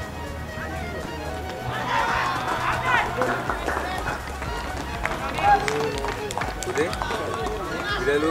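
Cricket players' voices calling and shouting across an open field, in short scattered calls, with a steady low background rumble.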